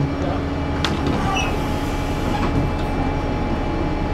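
Diesel engine of a single-deck bus idling at a stop, a steady low hum with a faint steady whine over it, heard from beside the bus.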